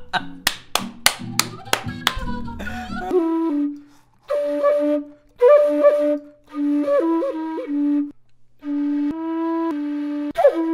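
End-blown wooden flute playing short phrases of low notes that bend and slide between pitches, broken by brief pauses. Before it comes in, about three seconds in, a run of sharp clicks about three a second.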